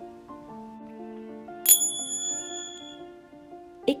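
Soft background music with sustained notes, and a single bright bell ding about one and a half seconds in that rings on for about a second.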